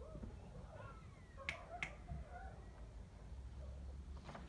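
Two sharp clicks about a third of a second apart, over faint sliding, voice-like calls in the background.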